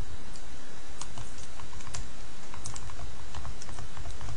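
Keys being tapped in irregular, quick clicks as a calculation is keyed in, over a steady low background hum.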